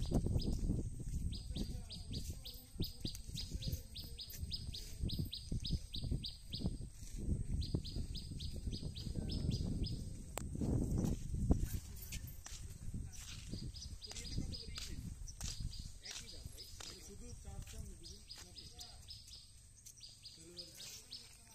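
A bird calling in runs of rapid, evenly repeated high chirps, several notes a second, each run lasting a few seconds with short gaps between, over a low outdoor rumble and a few handling clicks.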